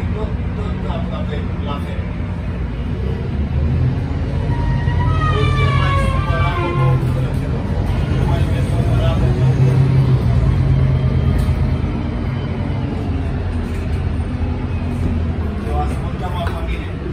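Otokar Kent C18 articulated bus's diesel engine and drivetrain heard from inside the passenger cabin, pulling under acceleration. The engine note builds to its loudest about nine to eleven seconds in, then eases, with a brief high falling whine around five to seven seconds in.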